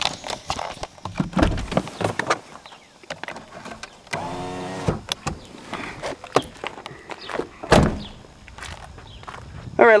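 Rustling, clicks and knocks of a handheld camera as someone climbs out of a 2000 Jeep Cherokee. There is a brief steady hum about four seconds in and a heavy thump near eight seconds.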